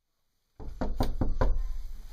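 Knuckles knocking on a panelled interior door, a quick run of about five raps starting about half a second in.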